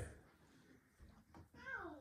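Near silence, then near the end a brief, faint voice-like cry that glides down in pitch.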